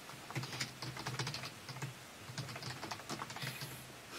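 Computer keyboard typing: a quick, irregular run of soft key clicks.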